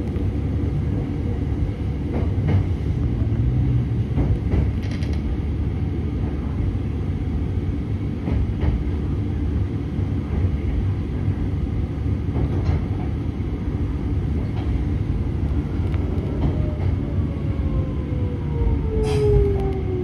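Meitetsu 6000 series electric train running slowly into a station, heard from inside the front car: a steady low rumble with a sharp click every few seconds as the wheels cross rail joints and points. Near the end a whine falls in pitch as the train brakes to a stop.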